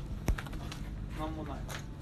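One sharp click about a third of a second in, followed by a few faint ticks and quiet voices over a low steady hum.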